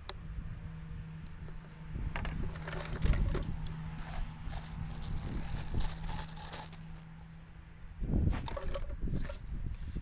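Handling noise from backpack blower parts being unpacked and assembled: plastic wrapping rustling and crinkling, with irregular clicks and knocks of plastic parts. A steady low hum runs underneath until about eight seconds in.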